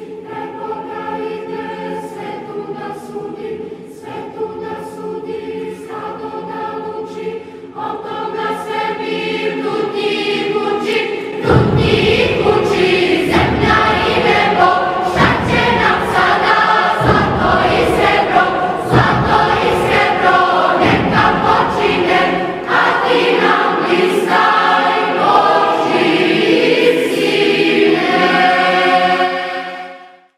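A choir singing a hymn in Serbian. The music grows louder, and a heavy beat comes in about a third of the way through. It fades out right at the end.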